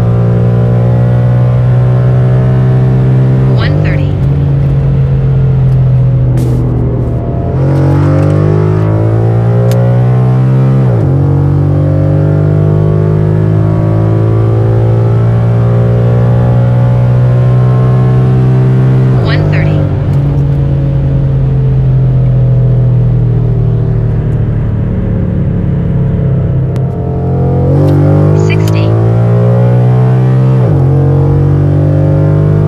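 Ford Mustang engine and exhaust heard from inside the cabin during high-speed pulls: a loud, deep, steady drone. Its pitch changes abruptly about five times, and some of the changes fall away with a quick downward glide as the revs drop.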